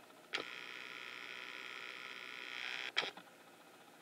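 A video camera's lens zoom motor running as the lens zooms out. It makes a steady whirring whine for about two and a half seconds, starting and stopping with a click.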